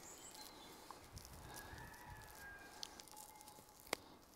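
Near silence: faint outdoor ambience with a faint distant bird call in the middle and one sharp click just before the end.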